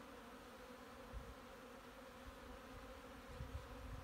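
Faint, steady hum of honeybees buzzing over an open hive and a lifted frame.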